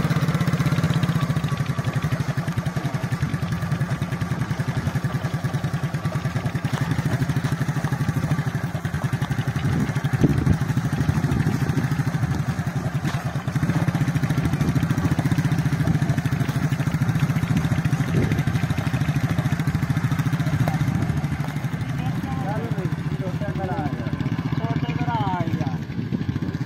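A small single-cylinder motorcycle engine runs steadily at low speed while the bike tows a wooden hoe through loose field soil.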